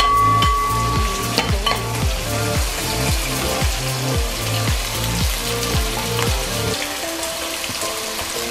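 Freshly added sliced onions sizzling in hot oil in an aluminium pan, stirred with a steel spatula that scrapes and clicks against the pan. Background music with a steady beat of about two a second plays along and its beat drops out near the end.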